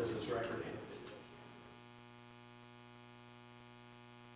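A voice that trails off in the first second, leaving a faint, steady electrical mains hum on the courtroom audio feed.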